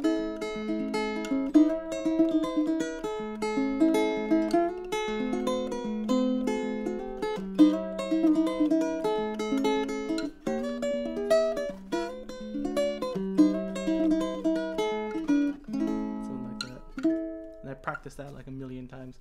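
Solo ukulele played in a quick run of plucked melody notes over chords, the notes ringing clearly. The playing thins out and gets quieter near the end.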